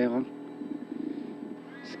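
Rally car's engine idling steadily while the car waits at the stage start, heard from inside the cabin.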